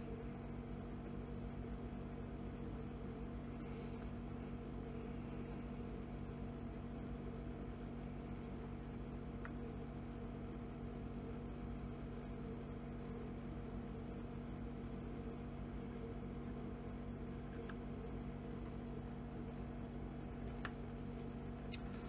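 A steady machine hum with several constant tones runs throughout. A few faint, short snips of scissors cutting ribbon come through it, one about nine seconds in and two near the end.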